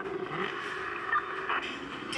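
Car-chase soundtrack from an action film, mostly car engine noise, playing through a flat-panel TV's small built-in speakers and sounding tinny.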